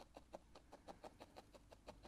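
Near silence with faint, quick light ticks, about ten a second, from hands working wool fibres into a needle-felting mask.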